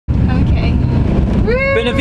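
Camper van driving, heard from inside the cab: a steady low rumble of engine and road noise. A man's voice comes in near the end.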